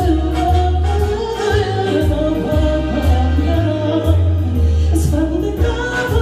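A woman singing into a microphone over backing music with a deep bass line and a steady beat, played through PA speakers.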